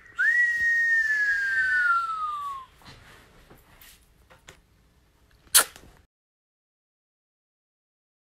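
A person whistling one long note that jumps up, then slides slowly down in pitch for about two and a half seconds. A sharp click comes about five and a half seconds in, and then the sound cuts off.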